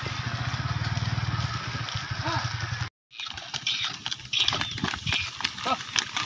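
Bullock cart loaded high with straw moving along a dirt road: a steady low rumble for the first half. After a brief dropout, the bullock's hoof steps and the cart's knocks and rattles follow.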